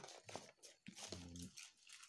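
Quiet handling noise from a cardboard box as a microphone is lifted out: scattered light clicks and rustles, with a brief low voice-like murmur about a second in.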